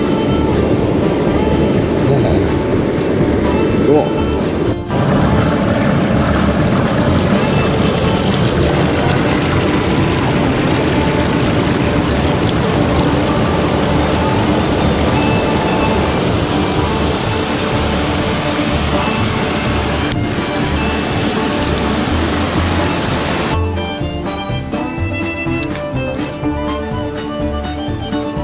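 Mountain stream water rushing steadily over rocks, loud throughout, with background music underneath. Near the end the rushing falls away and the music comes forward.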